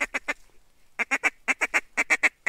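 Duck call blown in a fast, even string of short quacks, about seven a second, breaking off for about half a second near the start and then picking up again.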